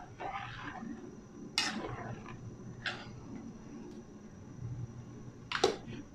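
A metal slotted spoon stirring liquid in an aluminium pan, with three short scrapes or knocks of the spoon against the metal, the last and loudest near the end, over a low steady hum.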